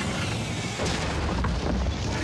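A loud, sustained rumbling crash with a deep boom, the dramatized sound of a sailing catamaran's hulls striking and grinding onto a coral reef.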